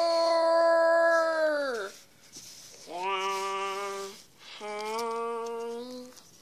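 A child's voice imitating Godzilla's roar in long, steady held cries. The first ends with a downward slide about two seconds in, and two shorter, lower cries follow about three and about four and a half seconds in.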